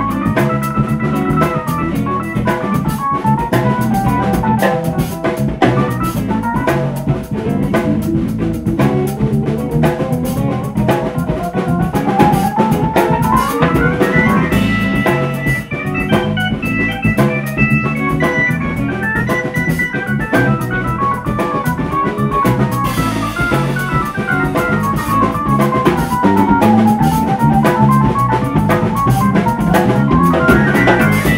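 Live band music: an organ sound from a Hammond SK2 stage keyboard plays melodic runs that rise and fall, with one long climb in the middle, over a drum kit with cymbals.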